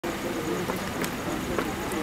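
Outdoor street ambience: indistinct voices over steady traffic or engine noise, with two light clicks.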